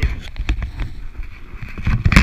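Wind rumbling on the microphone of a head-mounted camera, with scattered knocks and rustling as the jumper moves about beside his parachute canopy and lines. A louder rustle comes at the very end.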